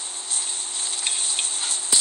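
Steady hiss of background noise with a faint steady hum under it, broken by one sharp click just before the end.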